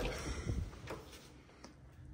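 Interior closet door being unlatched and opened by its lever handle: a few faint, short clicks from the handle and latch.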